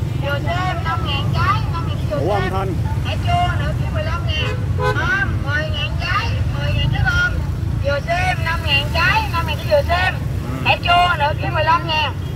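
Market crowd chatter: overlapping voices of vendors and shoppers talking and calling out, over a steady low rumble.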